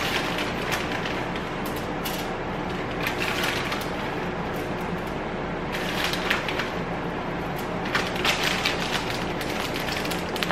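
Plastic shredded-cheese bag crinkling and rustling in short bursts as cheese is shaken out of it, over a steady low hum.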